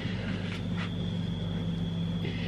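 Steady low electrical or machine hum with a thin high tone above it, continuous and unchanging.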